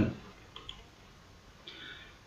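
Faint computer mouse click about half a second in, heard as two small ticks close together, as the Done button is clicked.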